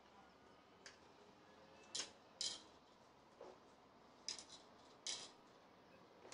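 Hard plastic toy parts being handled and fiddled with: faint, sparse clicks and taps, about half a dozen, spread over the few seconds.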